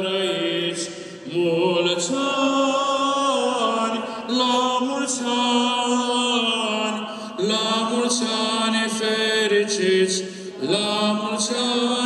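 Eastern Orthodox liturgical chanting, sung through a microphone in long held phrases that step slowly in pitch, with brief breaks between phrases.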